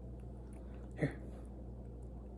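Steady low room hum, with one short click or smack about a second in.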